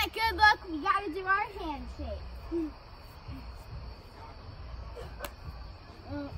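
A young girl's high-pitched laughter for about the first two seconds. After that it is quieter, with a steady high chirring of night crickets and a single sharp click about five seconds in.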